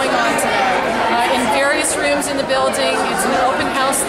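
Speech: a woman talking over the chatter of a crowd in a gymnasium.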